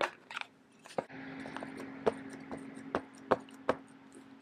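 A wooden-handled rubber stamp tapped repeatedly onto an ink pad to load it with ink: a series of light, irregular taps and clicks. A faint steady hum runs underneath from about a second in.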